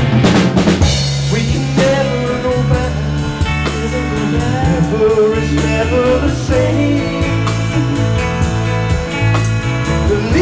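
Live rock band playing: full drum kit with bass drum and snare, over electric guitar and bass guitar, with a run of quick drum hits in the first second.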